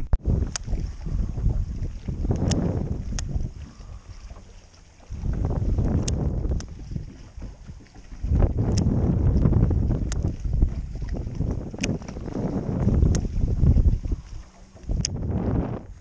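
Wind buffeting the microphone: a low rumble that surges and fades in long gusts, easing off about four seconds in and again briefly near eight seconds, with a few faint ticks over it.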